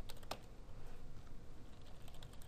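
Typing on a computer keyboard: a few scattered, faint keystrokes, the clearest in the first half second.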